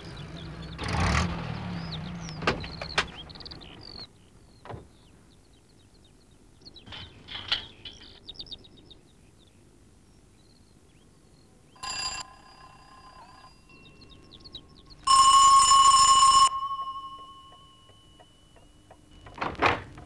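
An electric doorbell rung twice: a short ring about twelve seconds in, then a longer, loud ring whose tone lingers and fades. Before it, a small van's engine runs and stops, and birds chirp.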